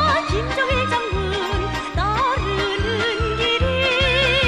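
A Korean military song: a singer with wide vibrato sings a march-like melody over a band with a steady, pulsing bass beat.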